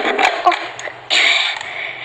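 A voice saying "oh" amid light clicks and taps of small die-cast toy cars being handled, then a short scratchy noise about a second in.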